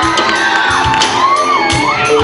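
Live rock band playing, with a steady drum beat under a long, wavering, gliding high melody line, and shouts from the crowd.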